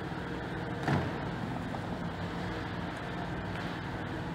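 Steady city street traffic noise, with one short knock about a second in as a glass shop door is pulled open.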